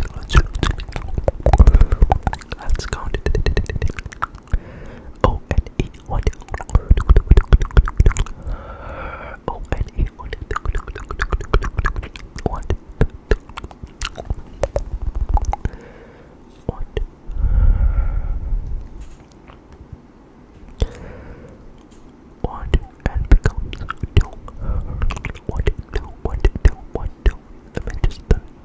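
Close-microphone ASMR trigger sounds: rapid, irregular clicks and crackles mixed with whispered mouth noises. Deep thumps come about two seconds in, around seven seconds and, loudest, around eighteen seconds.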